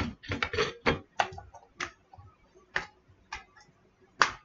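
Irregular sharp clicks and light knocks of small hard objects being handled while a Sherlock pipe bowl is loaded, about nine in all, close together in the first second and thinning out toward the end.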